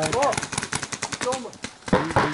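Paintball markers firing rapid strings of shots, many sharp pops a second, easing off shortly before the end.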